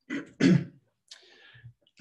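A man clearing his throat, two short rasps close together, followed by a softer breath.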